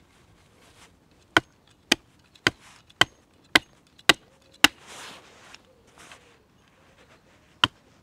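Axe chopping at the end of a wooden post to sharpen it to a point: seven strikes about two a second, then a pause, and one more strike near the end.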